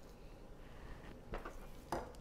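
Faint room tone with soft handling sounds: a few light taps and rustles in the second half as raw chicken breast slices are picked up and moved on a plastic cutting board.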